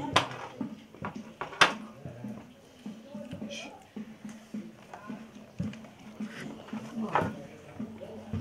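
Low, untranscribed voices of people talking while they work, with two sharp clicks, one just after the start and another about a second and a half in.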